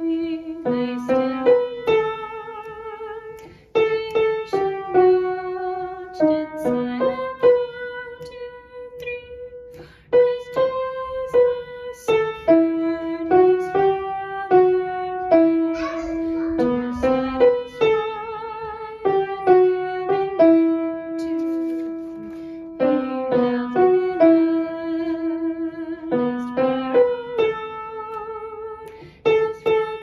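Upright piano playing the vocal parts of a song through as a slow melody, one or two notes at a time, each struck note held and fading before the next.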